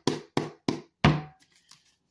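A quick run of sharp knocks on a wooden surface, about three a second, each with a short ringing decay, stopping about a second and a half in.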